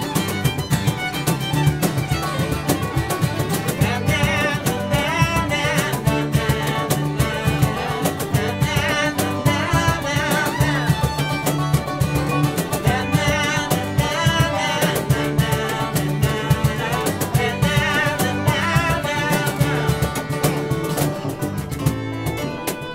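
Acoustic string band playing an instrumental passage live: fiddle prominent over banjo picking, acoustic guitar and upright bass.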